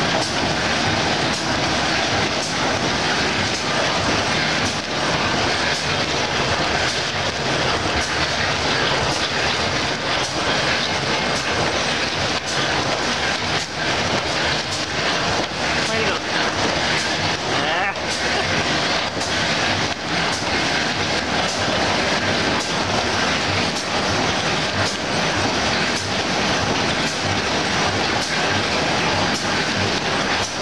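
Corrugated-board printer with rotary die cutter running: a loud, steady mechanical clatter with frequent sharp knocks as board sheets feed through its rollers and die.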